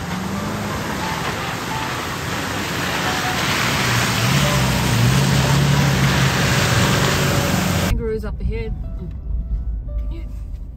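A four-wheel-drive vehicle driving close by on a wet, muddy track: a steady rush of tyre and spray noise over its engine note, which rises and grows loudest in the middle. It cuts off abruptly about eight seconds in, giving way to quieter in-cabin sound with voices.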